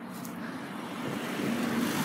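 A car driving past, its engine and tyre noise growing steadily louder.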